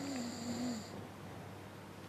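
A sleeping person snoring, louder in the first second and fainter after.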